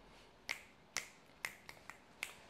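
A quiet series of sharp clicks or taps, about two a second, coming a little closer together near the end.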